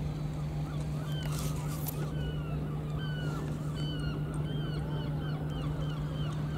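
Birds calling with many short, repeated rising-and-falling notes over a steady low hum.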